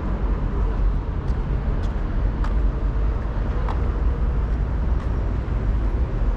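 Steady low rumble of city road traffic, with a few faint ticks.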